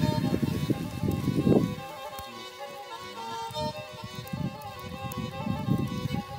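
Black Sea kemençe folk music: a bowed fiddle playing a run of held and stepping notes.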